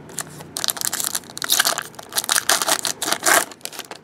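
A 2015 Upper Deck Football card pack's wrapper being torn open and crinkled by hand: a run of loud, rustling crackles from about half a second in until just before the end.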